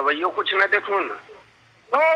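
Speech only: a person talking in Hindi on a recorded phone call, the voice thin and cut off above the middle range. The talk stops about a second in, and there is a pause until the end.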